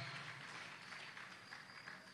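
Quiet room tone of a large hall holding a seated audience, a faint even background hiss and murmur; a man's voice fades away at the very start.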